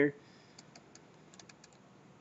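A few faint, sharp computer mouse clicks over low room hiss: two about half a second in, then a quick run of them near the middle.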